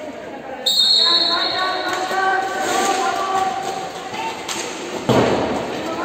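A short referee's whistle blast about half a second in, followed by voices calling out across an echoing sports hall, and a loud sharp knock near the end, typical of a roller hockey stick striking the ball.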